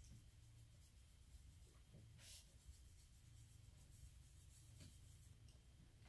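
Near silence with faint, soft scratching of an eyeshadow brush dabbing powder through fishnet mesh onto the face, one stroke a little louder about two seconds in.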